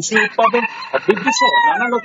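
A rooster crowing: one long crow, its drawn-out end falling in pitch.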